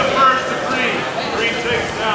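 Overlapping voices of spectators and coaches talking and calling out across the gym, with no other distinct sound.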